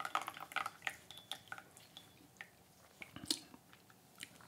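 Tea poured in a thin stream from a small porcelain pitcher into porcelain tasting cups: faint trickling and drips with a few light porcelain clicks, the loudest about three seconds in.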